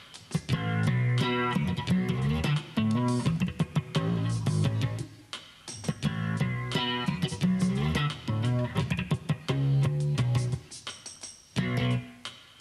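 Roland G-77 electric bass playing a continuous funk bass pattern that mixes clear notes, muted notes, pulled notes and harmonics, with sharp clicky attacks, played as a phrase that repeats every few seconds.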